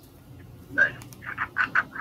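A voice over a phone's speakerphone says "nice", then gives a quick run of short, evenly spaced chuckles.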